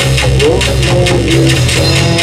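Live rock band playing loud in a small room: guitar over a steady drum beat and a low bass line.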